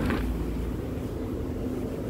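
Low, steady rumble of street traffic with a faint hum.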